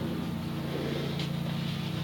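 Room tone: a steady low hum with no other clear sound.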